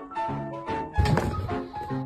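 Background music of short pitched notes, with a single loud thunk about a second in.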